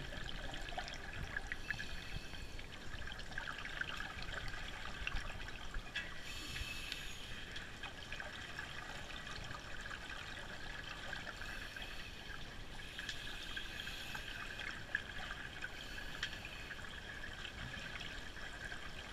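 Underwater sound through an action camera's housing: a steady crackling hiss, with louder rushes of scuba regulator exhaust bubbles every few seconds.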